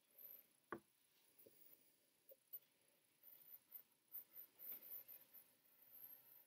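A metal drawing compass being handled and set on paper. There is one sharp click a little under a second in and a few small ticks, then a run of faint scratchy ticking over the second half.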